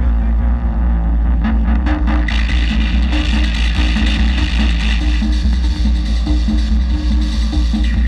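Live experimental noise music from a modular synthesizer and keyboard synth, played over a PA with subwoofers. A heavy, steady bass drone sits under a repeating pulsing figure, and a bright hissing noise layer comes in a little over two seconds in.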